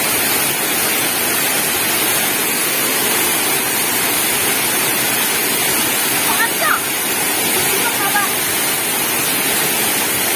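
Waterfall pouring over rocks: a loud, steady rush of falling water, with faint voices briefly heard about six seconds in.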